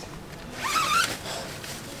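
Zipper on a cycling rain jacket being pulled once: a short rising zip of about half a second, starting about half a second in.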